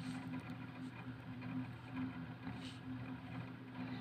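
Faint, steady low background hum of a few even tones.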